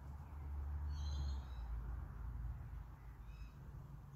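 Faint bird calls in the background, a few short high chirps about a second in and again past three seconds, over a low rumble.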